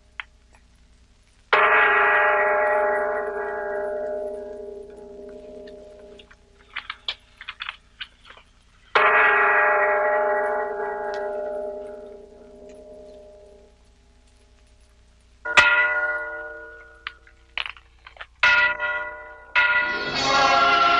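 A church bell tolling: two slow strokes about seven seconds apart, each ringing away over several seconds, then three quicker strikes in the last few seconds.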